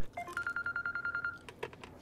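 Mobile phone ringing: a high electronic ring tone with a fast, even flutter that stops about a second and a half in.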